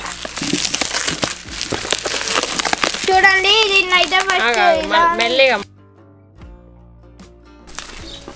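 Plastic packaging and bubble wrap crinkling and rustling as a box is unwrapped, a dense run of fine crackles for the first three seconds. A voice comes in over it about three seconds in, and the sound drops low about two seconds before the end.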